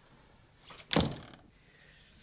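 A wooden door swung shut with a short swish and slammed once, loudly, about a second in.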